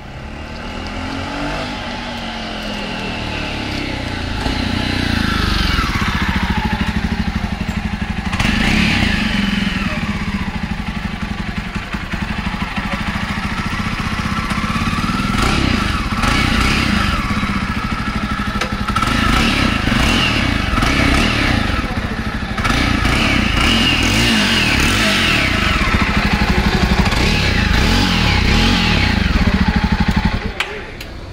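Stock Jawa Perak bobber with its single-cylinder DOHC engine and factory exhaust, riding and revving. Its pitch rises under throttle and falls back again and again.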